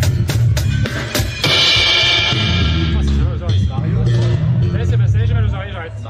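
Acoustic drum kit played loud: quick strikes for about a second and a half, then a crash cymbal left ringing for about a second and a half, over a steady low bass.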